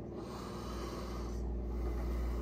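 A long breath out through the nose, lips shut around a packed lip of dip, lasting about a second and a half.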